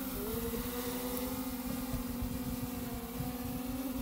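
DJI quadcopter drone hovering close by, its propellers giving a steady hum whose pitch wavers slightly, over low, uneven wind rumble on the microphone.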